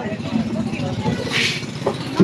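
Voices talking over the low, steady rumble of a passenger boat's engine, with a short hiss about one and a half seconds in.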